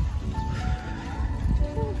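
Background music playing slow held notes under a steady low rumble of wind on the microphone.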